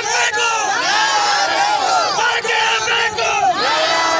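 Crowd of men shouting slogans together, many loud voices overlapping.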